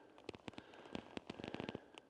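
Faint, irregular clicking and crackling of loose gravel and small rock chips shifting as someone moves on them.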